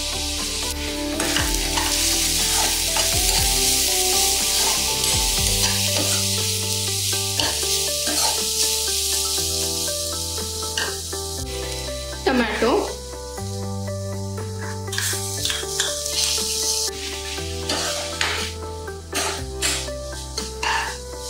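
Chopped onions and spices frying in oil in a kadhai, sizzling steadily, while a metal spatula stirs and scrapes them around the pan in repeated short strokes. The sizzle is strongest in the first half and eases off after the middle.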